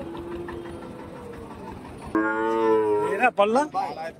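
A cow moos once, starting suddenly about two seconds in: a loud, steady, held call of nearly a second, followed by a man's voice.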